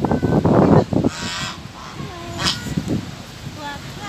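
Geese honking, a few short calls in the second half, alongside people's voices.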